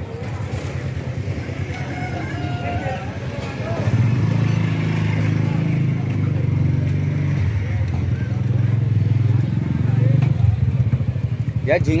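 A motor engine running nearby with a steady low hum, growing louder about four seconds in, amid the chatter of a busy street market.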